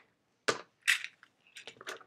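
Open metal tin of plastic quilting clips being handled and set down: a sharp knock about half a second in, a short rattle of clips near one second, then a few light clicks.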